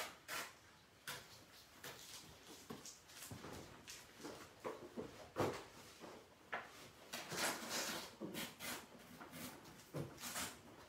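Handling noise of paper and a picture frame: irregular rustles and scrapes with small knocks, one sharper knock about halfway through and a longer stretch of rustling near the end.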